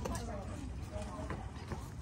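Voices of several people talking nearby, with a few light clicks or steps among them.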